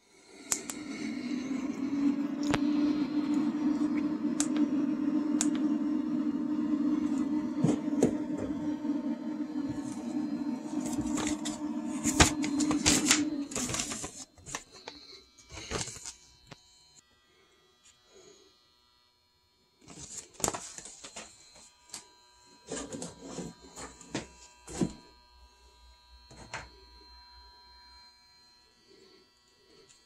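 A steady low buzz with scattered clicks for about the first 14 seconds, then stops. After that come short clicks and rustles of hands handling cable connectors and a paper leaflet, with a quiet gap in the middle.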